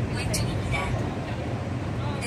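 Subway train running, a steady low rumble inside the car, with the onboard PA station announcement continuing over it during the first second.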